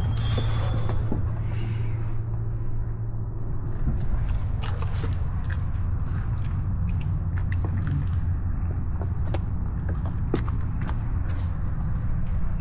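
A steady low rumble with many light, scattered clinks and clicks.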